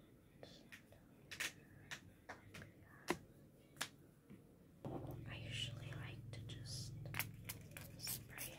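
Soft whispering voice with scattered sharp clicks and taps. About five seconds in, a steady low hum starts up beneath it.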